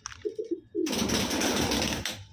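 Domestic pigeons cooing, three short low coo notes early on, followed from about a second in by a loud, steady hissing noise.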